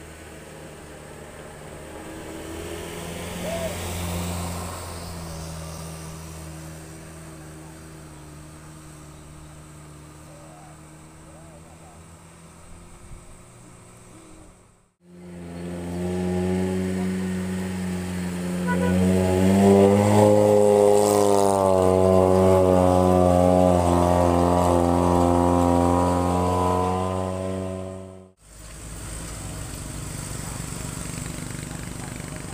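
Engine of a heavily loaded pickup truck labouring up a steep hairpin climb, running steadily at first. After a break it comes back louder, its pitch rising as the revs climb, then holds high under load before breaking off.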